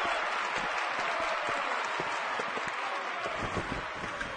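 Audience applauding: dense, steady clapping that eases off slightly toward the end.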